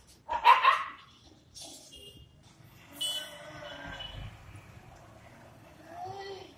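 A dog barking: a short burst of two or three loud barks about half a second in. A fainter, longer sound with a steady high tone follows about halfway through.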